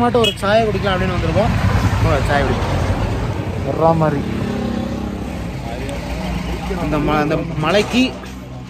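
Several men's voices talking over a steady low hum of a vehicle engine running.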